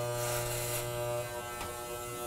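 Corded electric hair clippers fitted with a number-two guard, running with a steady hum while cutting hair.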